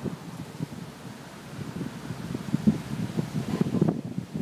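Wind buffeting the microphone: an irregular, gusty rumble that grows stronger in the second half.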